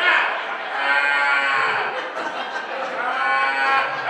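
Live comedy audience reacting to a punchline: a person in the crowd lets out two long, drawn-out vocal calls, each about a second long, over general crowd noise.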